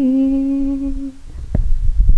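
A woman humming one long, steady note into a microphone, ending a little over a second in; then a thump and low rumble of the microphone being handled.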